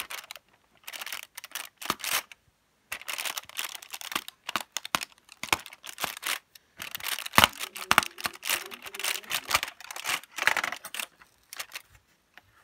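Perforated cardboard door of a Cadbury chocolate advent calendar being pushed in and torn open, in irregular scratchy bursts and clicks, with the foil behind it crinkling.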